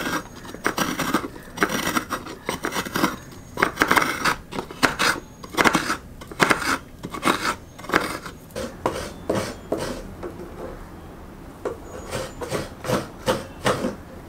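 Coconut half scraped over a hand coconut scraper's serrated round blade in repeated rasping strokes, about one or two a second, with a brief lull about ten seconds in. The grated coconut falls onto a steel plate.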